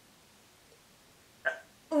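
Near silence with only room tone for about a second and a half, then one short vocal sound from a young woman; her speech starts at the very end.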